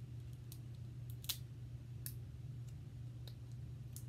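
Snow crab shell being cracked and picked apart by hand with long acrylic nails: a handful of short, sharp cracks and clicks, the loudest a little over a second in.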